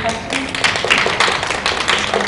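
A small group applauding, with separate hand claps distinct in a dense irregular patter.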